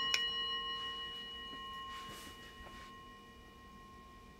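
Small brass singing bowl ringing on after a strike with a wooden stick, several clear tones sounding together and slowly fading away. A light tap comes just after the start.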